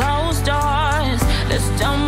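A woman singing a melody with wavering vibrato over steady, sustained low backing music.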